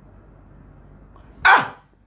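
A faint low hum, then one short, loud vocal call about one and a half seconds in, falling in pitch.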